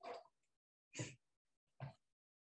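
Near silence broken by three short, faint vocal noises from a man, grunt-like rather than words, about a second apart.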